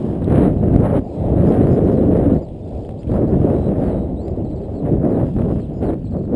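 Wind rumbling on an action camera's microphone as it travels along a gravel track, mixed with the rattle and crunch of the ride over the gravel. The rumble swells and drops in gusts, with a brief lull about halfway through.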